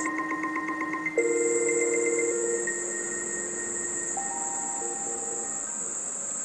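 Electronic synthesizer music: several steady, held tones at different pitches, with a fast-pulsing high tone over the first couple of seconds. A new pair of lower tones comes in about a second in, and more tones join around four seconds in, over a steady very high whine.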